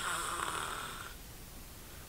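A man's audible breath between sentences, a hissy rush of air lasting about a second and a half before fading out.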